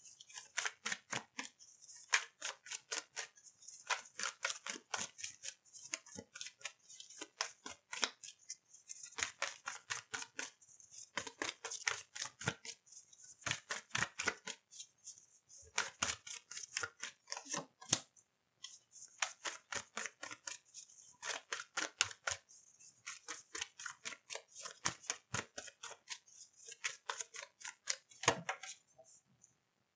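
A deck of tarot cards being shuffled by hand: quick runs of crisp card flicks and slaps, in bursts of about a second with short gaps between.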